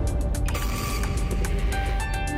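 Background music: held tones over a heavy low bass pulse.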